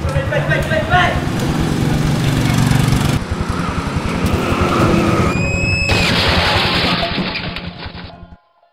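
Small motorcycle engine running and revving under shouting voices. A brief high-pitched squeal comes a little past the middle, and the sound fades away at the end.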